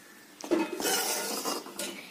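Metal spoon stirring a thick curry in a steel pan, scraping and clinking against the pan, starting about half a second in.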